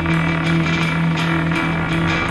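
Post-punk band playing live in an instrumental passage: electric guitar over sustained low notes and a steady beat of about three strikes a second, with no singing.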